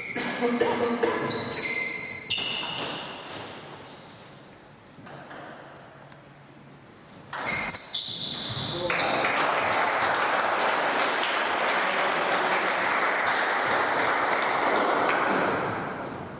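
Table tennis ball hits, sharp pings with a short ring, in a quick rally; then spectators applaud for about six seconds once the point ends.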